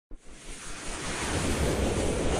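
Whoosh sound effect for an animated logo intro: a rush of noise with a low rumble under it, swelling louder over the two seconds.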